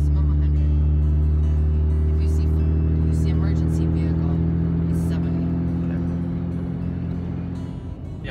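Vehicle engine droning inside the cab as it picks up speed, its pitch rising slowly and steadily, easing off a little near the end.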